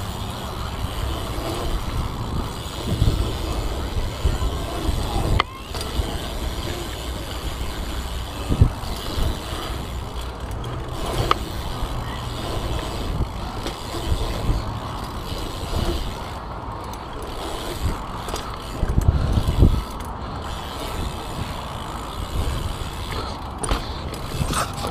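A BMX bike ridden through a concrete skatepark bowl: wind buffets the handlebar-mounted camera's microphone and the tyres roll on concrete, with a few sharp knocks from the bike, about five, eight and eleven seconds in.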